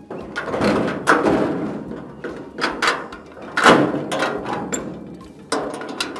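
Large metal gate being pushed and worked by hand, giving a series of about half a dozen clanks and rattles, the loudest about two-thirds of the way through.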